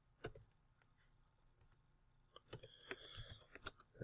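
Computer keyboard typing, faint: a single keystroke, a pause, then a quick run of keystrokes in the second half.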